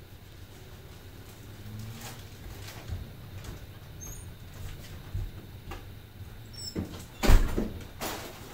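Low steady hum with scattered faint knocks of someone moving about out of view. Near the end comes one loud thump, followed by footsteps on a brick floor as a person walks back in.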